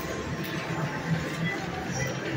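Casino floor din: a dense, even background of voices and slot machine noise, with no clear chime from the machine at this moment.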